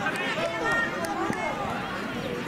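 Many overlapping voices shouting and calling across a children's football pitch during open play, with a single short knock just past the middle.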